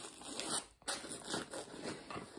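Zipper on a fabric admin pouch being pulled open in several short strokes.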